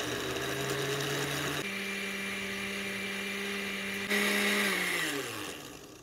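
A low-powered countertop blender with a glass jar running, puréeing fresh corn kernels with an egg into a thick batter. Its hum steps up in pitch a little past a second in, grows louder around four seconds, then winds down and stops near the end.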